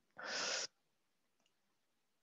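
A woman's short, breathy exhale or sigh, unvoiced and lasting about half a second.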